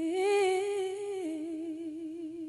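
A woman's voice singing unaccompanied, holding a long note with a steady vibrato that steps down to a lower held note about a second in.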